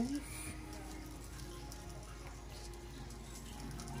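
Whole black peppercorns trickling from a glass spice jar into a plastic measuring spoon, a faint pattering under low background voices and music.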